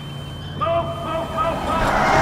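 A voice shouting urgent warnings in a few short calls over the steady low hum of an approaching car. Near the end a loud rushing noise swells in.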